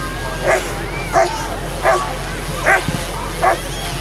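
Police K-9 dog held on a leash, barking five times at an even pace, about three-quarters of a second apart.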